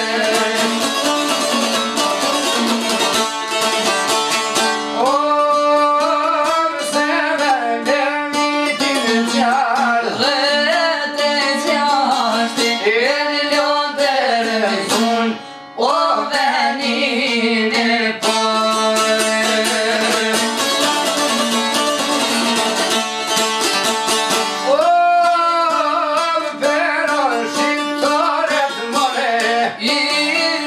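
Two çiftelia, Albanian two-stringed long-necked lutes, plucked in a fast, steady accompaniment, with a voice singing a heavily ornamented Albanian folk melody over them. The song comes in phrases: instrumental at first, singing from about five seconds in, a short break near the middle, more instrumental, then another sung phrase near the end.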